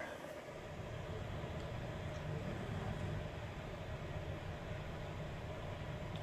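Quiet, steady low rumble and hiss inside the cabin of a 2018 Chrysler Pacifica Hybrid minivan as it reverses slowly under automatic park assist, with a faint steady tone above it.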